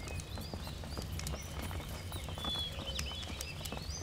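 Outdoor ambience: scattered light clicks and knocks, with faint high chirps, over a low steady rumble.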